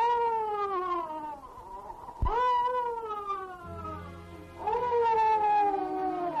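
Baby crying: three long wailing cries, each rising at the start and then sliding down in pitch, beginning about two seconds apart.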